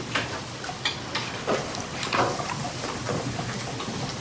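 Courtroom room noise as people move about: shuffling with a few scattered small knocks and clicks over a steady background hiss, and no clear speech.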